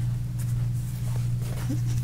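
A steady low electrical hum, with faint brief rustles of a paper towel being handled and smoothed flat on a craft mat.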